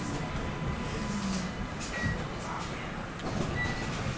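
Interior running noise of a Vienna U-Bahn Type V train moving slowly along a station platform: a steady low rumble, with two short high-pitched tones, one about two seconds in and one near the end.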